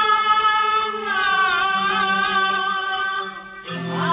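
Teochew opera music: a sustained, slightly gliding melodic line over string accompaniment, thinning out briefly just before the end.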